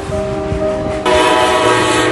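Train horn sounding a steady multi-note chord, becoming louder and fuller about a second in.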